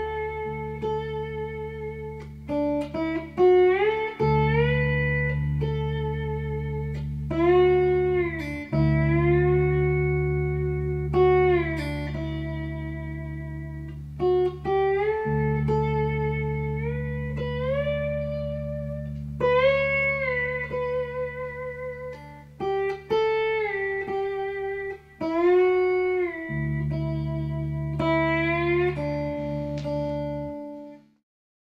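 Electric guitar in open D tuning played with a brass slide: melody notes glide up and down into pitch over low open bass strings left to ring as a drone.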